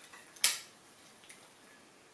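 A metal spoon clinks once sharply against a ceramic cereal bowl while scooping cereal puffs, with a faint second tick about a second later.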